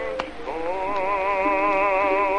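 Baritone voice singing with a wide vibrato, holding one long note from about half a second in over a soft accompaniment. It is an early acoustic recording from 1920, thin and boxy in tone, with record-surface hiss and a click.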